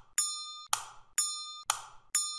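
Short electronic sound effects alternating between a dry click and a bright bell-like ding, about one every half second, two of each, ticking along as the simulation is clocked step by step.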